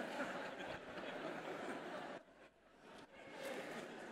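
Faint chuckling and laughter from an audience, cutting out completely for under a second about halfway through, then a faint murmur returning.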